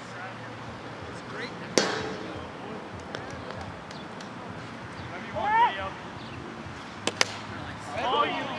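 A pitched plastic wiffle ball strikes once with a sharp crack and a short ring about two seconds in. A man's shout rises and falls in the middle, and two quick knocks come close together near the end.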